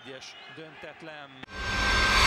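Faint voices from the broadcast's stadium sound, then about one and a half seconds in a sudden loud rushing whoosh with a deep low thump: the logo sting sound effect of the channel's end ident.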